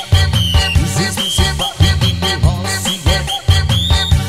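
Loud live orgen Lampung dance remix played on an electronic keyboard: a heavy, steady bass beat under a synth lead whose notes glide in pitch.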